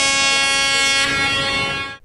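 Warning signal from the SafeTrain ('Берегись поезда') smartphone app: one steady, unbroken horn-like tone, which fades out at the end. The app sounds it when the user comes into the danger zone near railway tracks, cutting into music in their headphones.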